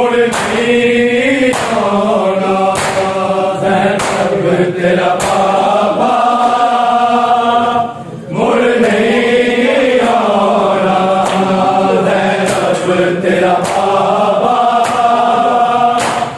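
A group of men chanting a Shia noha (lament) in unison, with regular slaps of hands on bare chests (matam) keeping the beat. The chant breaks off briefly about eight seconds in, then resumes.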